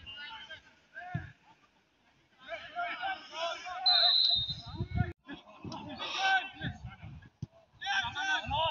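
Shouts and calls of footballers across the pitch. There is a short, high, steady tone about four seconds in, and a quiet moment just before the voices start.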